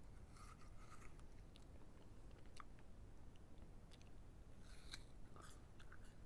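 Quiet crunching and chewing of a raw apple, close to an earphone microphone: a crisp burst of crunching about half a second in and another near the end, with small wet mouth clicks between.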